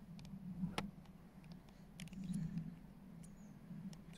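Faint, sharp clicks of a camera's control dial being turned to change the exposure settings, the clearest just under a second in and another about two seconds in, over a steady low hum.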